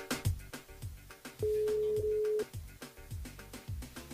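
Telephone ringback tone of an outgoing call not yet answered: one steady beep about a second long, in the middle, part of a cycle that repeats every three seconds, over background music with a steady beat.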